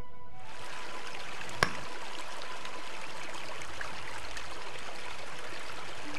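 A small stream running over rocks, a steady rushing hiss, with one sharp click about a second and a half in. Faint music tones fade out in the first couple of seconds.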